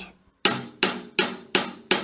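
Hi-hat struck in steady eighth notes, about three short strokes a second, starting about half a second in.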